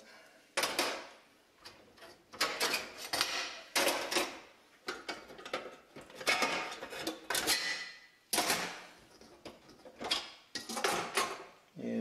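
Metal coil burner elements being pulled out of their sockets on a Kenmore electric cooktop and set down on its stainless steel top: a series of metal clicks, scrapes and clatters, a few every couple of seconds.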